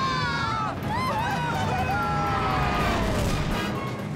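Cartoon spaceships launching and flying off: a steady low rocket rumble under background music, with high gliding cries that fall in pitch over the first three seconds.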